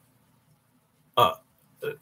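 A pause in a man's talk with faint low room hum, then a single short throaty vocal 'uh' a little past a second in, and the start of his next word near the end.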